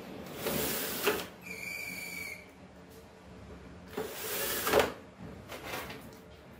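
Aluminium slide table of a home-built CNC machine pushed along its linear rails, sliding twice with a knock as each slide stops, then a shorter slide near the end. A brief high squeal comes between the first two slides.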